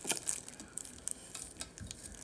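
Hands handling packaging: irregular small clicks and short crinkling rustles.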